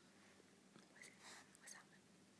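Near silence: faint room tone, with a few very soft hissing sounds about a second in.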